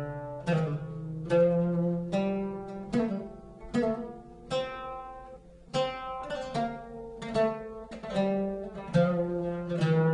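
Oud played with a plectrum, picking out a scale one note at a time at an even, unhurried pace: the maqam Rast scale, a major scale with its third and seventh steps lowered by a quarter tone. There is a short break about halfway through before the notes resume.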